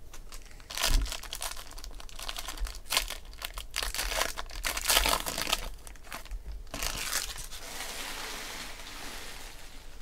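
A foil trading-card pack wrapper being torn open and crinkled by hand. There is a sharp burst of crinkling about a second in, then irregular crackling and tearing, and a softer steady rustle near the end.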